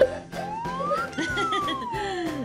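A single whistle-like tone slides up in pitch for about a second and then glides slowly back down, with faint voices underneath.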